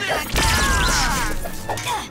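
Cartoon scuffle sound effects over background music: a heavy impact about a third of a second in, followed by a strained, falling cry.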